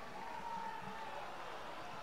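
Faint, steady background noise of a competition hall, with distant voices that cannot be made out.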